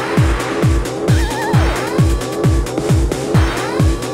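Early-1990s rave-style house/techno track: a deep kick drum that drops in pitch on every beat, about two beats a second, under warbling, sliding synth lines.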